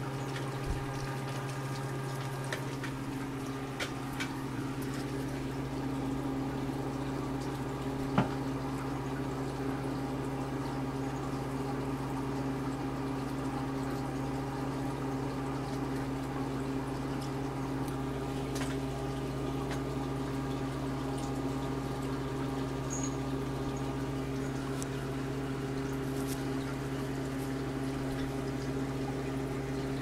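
Aquarium running: a steady hum from the tank's pump equipment under a constant bubbling and trickling of water from the bubbler. A single sharp click sounds about eight seconds in.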